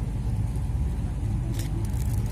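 Steady low rumble of wind buffeting the microphone, rising and falling unevenly, with a few faint clicks near the end.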